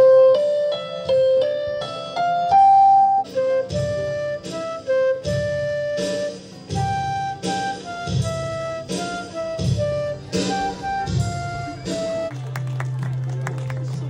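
Live flute melody over keyboard accompaniment and electronic drums. About twelve seconds in, the melody ends on a held low note as the audience begins clapping.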